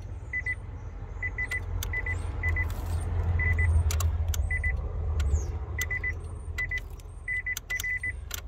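Nissan Leaf's dashboard warning chime giving short high pips in irregular clusters of two or three, among sharp relay clicks and a low hum that swells in the middle, as the car's electrics power on and off. Even a light touch on the wiring loom behind the glove box sets it off: an intermittent connection in the loom.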